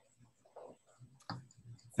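Faint sound on a video-call line: a soft click a little over a second in, with a few quiet low sounds around it.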